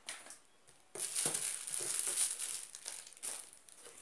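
Clear plastic packaging crinkling and rustling as it is handled inside a cardboard box. It starts about a second in and goes on for a couple of seconds.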